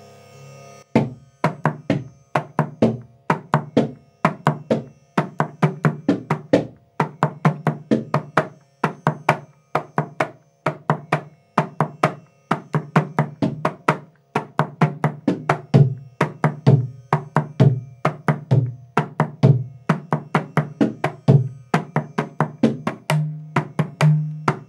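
Mridangam played with rapid, crisp finger strokes that start about a second in and keep going, each ringing at the drum's tuned pitch. The strokes follow the beginner exercise 'kita ta, kita di, kita dum, kita nam', with repeated kita groups before each closing stroke.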